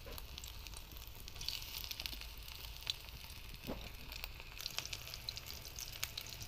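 Prawn-paste fritters frying in a shallow pool of hot oil in a steel wok: a steady high sizzle with a few scattered pops.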